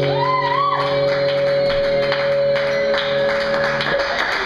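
Live punk band holding a final ringing chord on electric guitars and bass with cymbal crashes, the chord cutting off just before the end. A short high rising tone sounds about half a second in.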